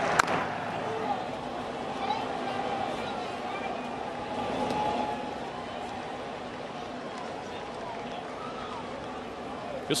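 The crack of a bat fouling off a pitch a fraction of a second in, then the steady murmur of a ballpark crowd, swelling a little around the middle.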